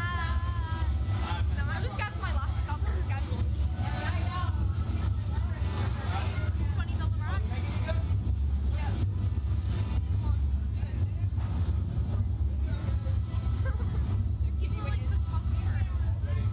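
Steady low rumble throughout, with scattered, indistinct talk from the two riders seated in the ride capsule.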